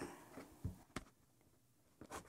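Faint handling sounds of quilting pieces and tools on a cutting mat: a soft thump, then a short sharp click about a second in, then near silence.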